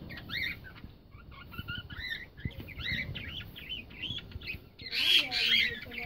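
Small parrots chirping and chattering with quick warbled calls, with one louder, harsher squawk about five seconds in. Faint light taps sound underneath.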